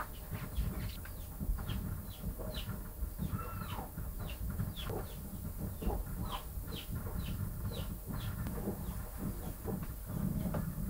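Birds chirping faintly in the background, a string of short falling chirps about two a second, over a steady low rumble.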